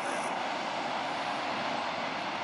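Steady, even roar of big-wave surf and whitewater, heard from afar, with a jet ski's engine running in it.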